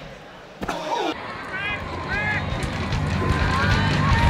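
Short wordless shouts and a falling yell, then music fading in with a heavy bass line that grows louder toward the end.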